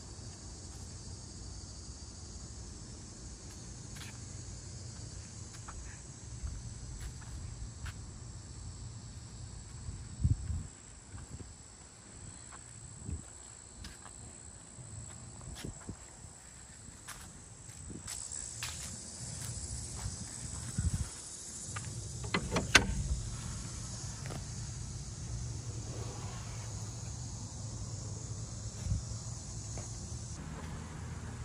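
Outdoor ambience: a steady high-pitched insect drone, with a low rumble underneath. A few knocks and thumps, the loudest about 23 seconds in.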